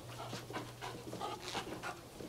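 A 16-week-old puppy panting in short, quick breaths, about four a second.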